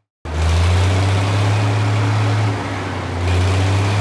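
Truck engine running steadily with a deep, even hum. It starts just after a brief silence and dips a little in loudness for under a second past the middle.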